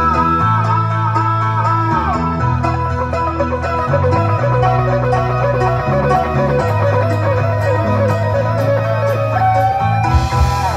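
Live rock band playing an instrumental passage through a PA: a wavering electric guitar lead line over sustained bass notes, keyboards and a steady drum beat.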